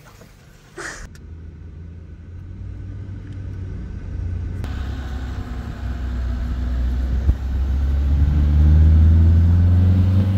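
Low rumble of a moving car, road and engine noise, growing steadily louder and heaviest over the last few seconds.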